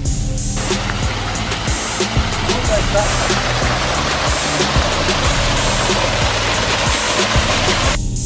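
Water pouring down a small waterfall over a rock face, an even rush that begins about half a second in, heard together with background music that has a steady drum beat.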